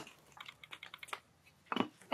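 A quick run of faint light clicks and taps, about ten in under a second, then a short louder knock-like sound near the end.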